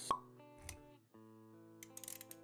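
Animated-intro sound effects over background music: a sharp pop right at the start, then a softer low thump about halfway. The music's held notes break off briefly about a second in and then carry on.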